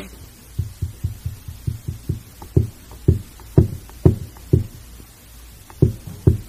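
An irregular series of soft, low thumps, about three a second, loudest in the middle, pausing briefly and then returning with two more near the end.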